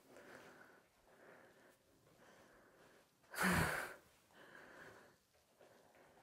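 A woman breathing while she exercises, with one louder, breathy exhale about three and a half seconds in and faint soft sounds around it.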